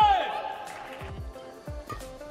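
Badminton rally on court: a loud, brief high-pitched squeal at the start that rises and falls, then a few sharp, separate clicks of racket-on-shuttlecock hits and footfalls.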